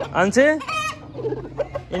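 Aseel chickens calling in the yard: clucks and a brief, high-pitched call just under a second in.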